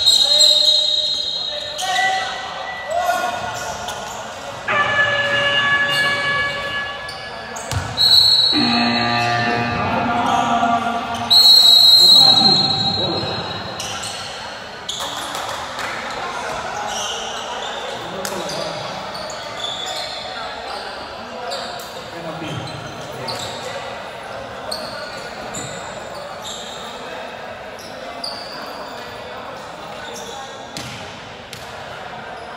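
Basketball bouncing on a wooden gym floor, with shouting voices ringing around a large hall. A high, steady whistle sounds briefly at the start and about 8 seconds in, then in a louder blast of nearly two seconds from about 11 seconds: a referee's whistle stopping play. After that there is quieter, steady bouncing and chatter.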